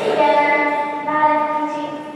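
A girl singing two long held notes, with the pitch changing about a second in.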